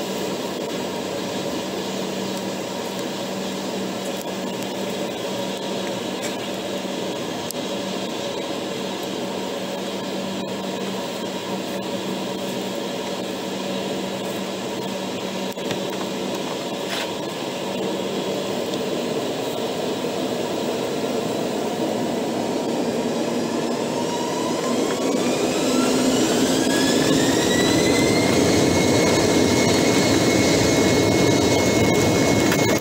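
Embraer 195's GE CF34 turbofan engines heard inside the passenger cabin, running steadily at taxi power. About three-quarters of the way through, the whine rises in pitch and the engines grow louder, then level off near the end: the engines spooling up as the jet lines up for takeoff.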